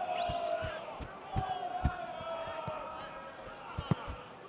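A football being played on a grass pitch: a run of dull thuds from the ball being touched and kicked, the sharpest about two seconds in and just before the end, under long distant shouts from players and crowd.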